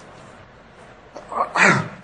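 A man clears his throat once, a short harsh burst near the end, after about a second of quiet room.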